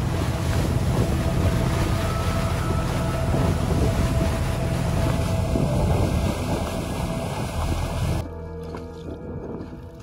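Steady low rumble of sea and wind noise with a faint held hum, under background music. It drops to a quieter hiss about eight seconds in.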